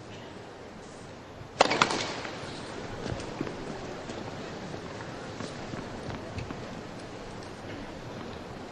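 A sudden loud cluster of sharp cracks about a second and a half in, fading over about a second into steady arena background noise with a few faint knocks.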